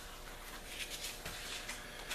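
Faint rubbing and rustling of a paper towel wiping glue squeeze-out from the edge of a freshly glued-up disc, in a few short soft strokes.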